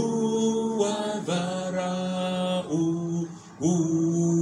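A man singing a slow worship song into a microphone in long held notes, pausing briefly for breath twice.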